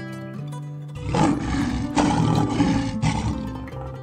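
Background music, with a large animal's loud, rough call starting about a second in and lasting about two seconds.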